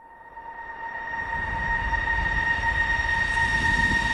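Sound-design swell of an animated title sequence: two steady high tones over a rush of noise and low rumble that grows steadily louder, building toward the theme music.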